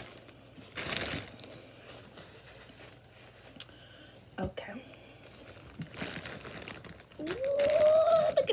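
Paper napkin crumpling and rustling as it is used to wipe, loudest about a second in, then a single sharp click midway. A voice exclaims near the end.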